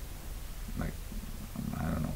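A man's low, wordless vocal sounds: a brief one about a second in and a longer, deeper one near the end, over quiet room tone.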